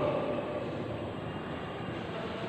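Steady background noise with no distinct strokes or voice.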